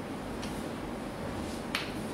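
Quiet room tone with two short clicks: a faint one about half a second in and a sharper one near the end.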